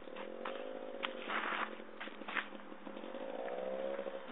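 Gas Gas JTX 270 two-stroke trials motorcycle engine revving, its pitch climbing near the start, easing off, then rising again toward the end. Footsteps scuff on a dirt path over it.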